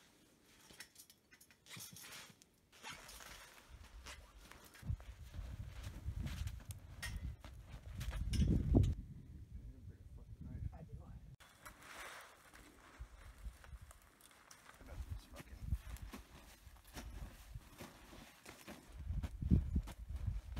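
Irregular thumps and knocks from a ladder treestand being handled, with boots crunching and stepping in deep snow. The loudest knock comes a little before the middle.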